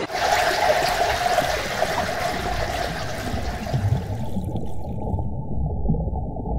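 Rushing, gurgling water. About four seconds in it turns suddenly muffled and dull, as if heard from under water.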